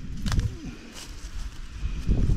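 A hand rummaging in dry twigs and dead leaves, with a sharp crackle about a quarter second in and a fainter one near one second. Underneath is a low rumble of wind on the microphone.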